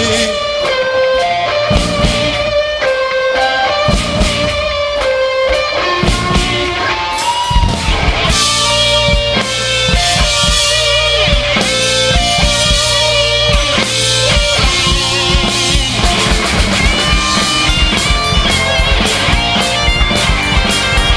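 Live rock band playing an upbeat pop-punk instrumental passage with no vocals: electric guitars over bass and drum kit.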